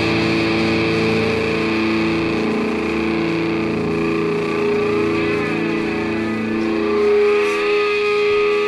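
Punk rock recording: distorted electric guitar holding ringing, droning chords, with a swooping sweep in the tone around the middle.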